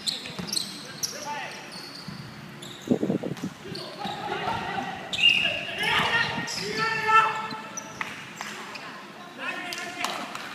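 A basketball bouncing and players' sneakers squeaking on the wooden floor of an echoing indoor sports hall during a game. Players shout to each other, loudest about halfway through.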